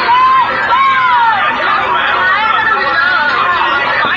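Loud chatter of several high-pitched children's voices talking over each other at once.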